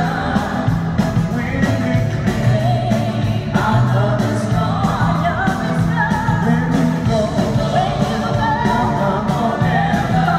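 Live pop-rock band playing through an arena's PA, with drums, keyboards and guitars under two singers sharing a duet. It is heard from high in the stands, with the hall's echo.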